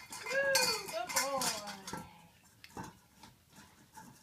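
Stainless-steel dog bowls clinking and ringing as a dog noses and pushes a small bowl against a larger one, busiest in the first two seconds, then a few lighter knocks.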